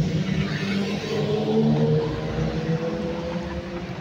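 Irisbus Citelis city bus engine running as the bus passes close by, a steady engine note that fades slightly near the end.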